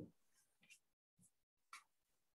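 Near silence on a video-call line, with a few faint, brief sounds, the clearest near the end.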